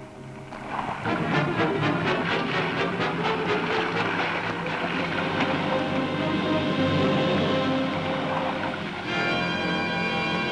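Orchestral newsreel score music, with a brisk pulsing rhythm that gives way to held chords near the end.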